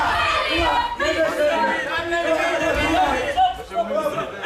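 Many overlapping voices of ringside spectators and corner people shouting and chattering during the bout.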